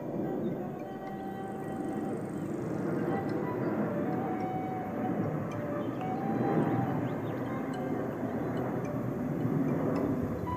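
Airplane flying overhead: a steady rumble that swells gradually over the seconds.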